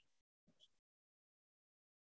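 Near silence: a pause between sentences of speech.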